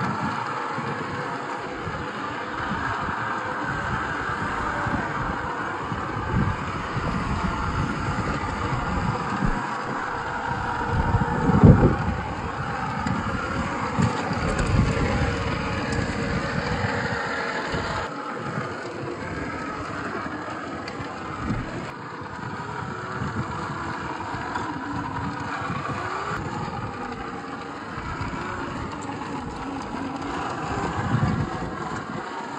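Traxxas TRX-4 RC crawler's electric motor and gearbox whining as it crawls, the pitch wavering with the throttle, over the tyres scrabbling and knocking on wet rock. One louder thump about twelve seconds in.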